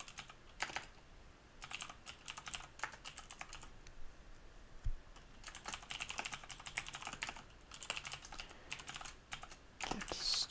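Typing on a computer keyboard: quick runs of keystroke clicks separated by short pauses, with a single low thump about halfway through.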